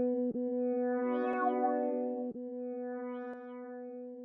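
Closing ident music: a single held chord that swells twice, with brief dips about every two seconds, and grows quieter in the second half.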